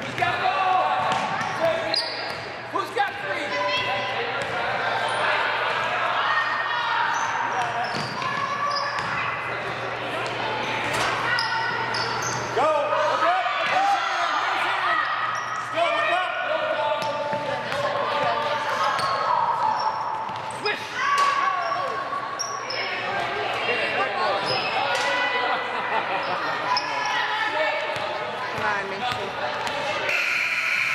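Basketball being dribbled and bounced on a gym's hardwood floor, sharp knocks echoing in the hall, mixed with untranscribed voices of players and spectators calling out.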